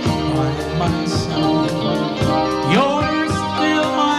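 Live band playing an instrumental passage of a slow country-style ballad, with guitar, keyboards and drums.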